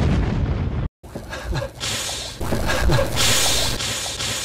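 An explosion: a deep boom and rumble that cuts off abruptly just before a second in. After a brief dead gap, uneven noisy sound follows, with a loud hiss near the end.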